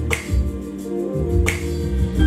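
Background music: a slow R&B-style song with a bass line and a finger snap on the beat, heard twice about a second and a half apart.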